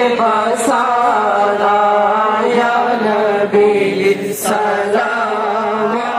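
A voice chanting a melodic Islamic recitation over loudspeakers, drawing out long held, wavering notes.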